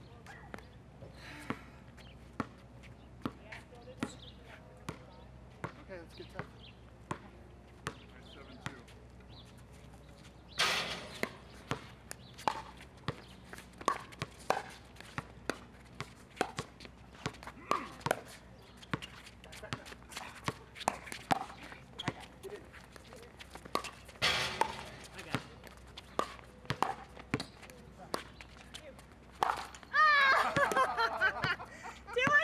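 Pickleball paddles striking a hard plastic ball and the ball bouncing on the court in a rally: a string of sharp pops, about one a second at first, then coming faster. Two short louder rushes of noise break in, about ten seconds in and near the end.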